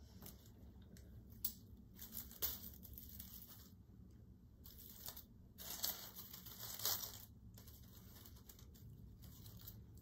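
Faint, irregular rustling and crinkling of dry grapevine twigs and tulle netting as a ribbon bow is pushed into a grapevine wreath by hand, with a few louder rustles partway through.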